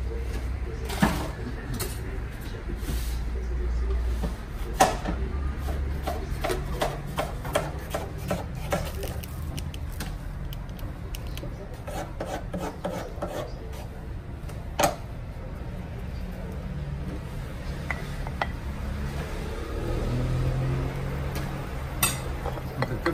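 Kitchen utensil clatter while fatteh is dished up: a metal ladle knocks and scrapes against an aluminium pot and a plastic takeaway tray. There are scattered sharp clicks, a few of them louder knocks, over a low steady background hum.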